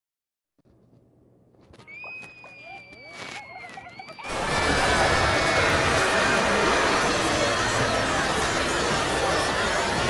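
Many cartoon clips' soundtracks playing over one another: overlapping voices and music. It starts faint, with a high, slightly falling whistle-like tone, then about four seconds in it jumps to a loud, continuous jumble of overlapping sound.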